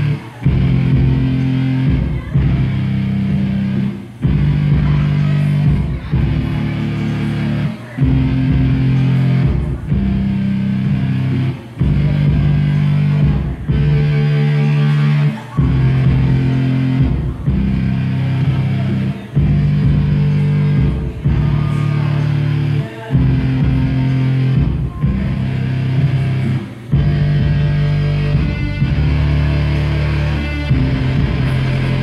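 Live band music led by electric keyboard: a loud, heavy low riff of chords held about two seconds each, with brief breaks between them, repeating over and over.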